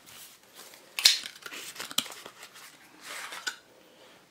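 A sealed cardboard playing-card tuck box being opened by hand: a sharp paper rip about a second in, then a click and softer rustling of card and paper as the deck comes out.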